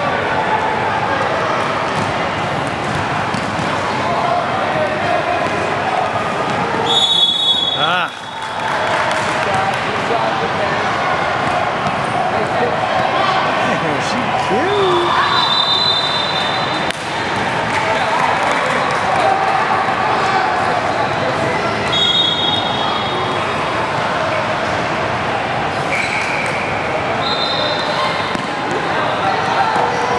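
Youth basketball game in a gym hall: the ball bouncing on the hardwood court under steady spectator chatter, with a few short high squeaks.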